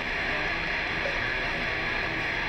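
Live heavy metal band playing with loud distorted electric guitar, a dense, unbroken wall of sound.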